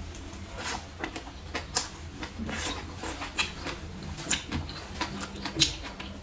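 Close-miked chewing of a mouthful of cooked leafy greens, a string of irregular short crunches and mouth clicks.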